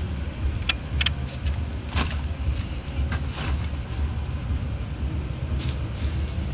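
A steady low rumble from an idling vehicle engine, with several short, sharp clatters of junk being shifted in an SUV's cargo area, the loudest about two seconds in.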